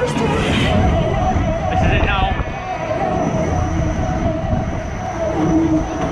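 Spinning fairground ride running: a steady, loud mechanical rumble from the rotating platform and cars, mixed with fairground music and voices.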